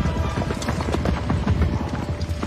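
Film soundtrack of a cavalry charge: many horses galloping together, a dense, continuous drumming of hooves over orchestral score music.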